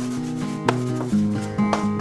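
Acoustic guitar background music, with chords strummed about twice a second.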